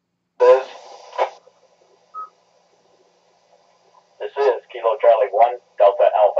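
Amateur-radio net traffic heard through a radio's speaker. A short burst of a voice with hiss comes about half a second in, and a brief beep about two seconds in. Another station starts talking about four seconds in.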